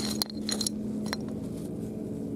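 A few small clinks of pottery sherds and stones knocked together by hand in the first second, with a short high ring. A steady low engine hum runs underneath.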